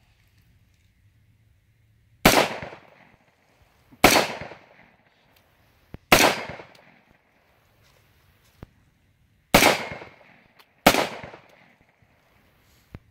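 An 18-inch AR-15 rifle in .223 firing five semi-automatic shots at uneven intervals of about one to three and a half seconds, each sharp crack trailing off in a short fading tail.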